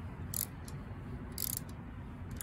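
Ratcheting torque wrench with a 4 mm Allen bit turning a bicycle stem set screw: two short ratchet clicks about a second apart, one per stroke of the handle.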